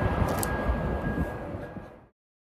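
Gas station forecourt ambience at a fuel pump: a low rumble with a thin steady whine and a brief click about half a second in, fading out near the end.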